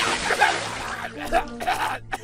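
Cartoon sound effect of a sudden hard spray of water, starting abruptly and dying away after about a second, with a character's spluttering voice through it over steady background music.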